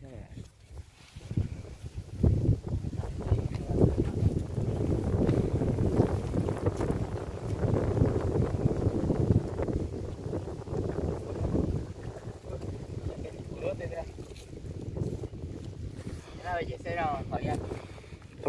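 Wind buffeting the phone's microphone in uneven gusts, a low rumbling rush that is strongest through the first two-thirds and eases off later. A voice speaks briefly near the end.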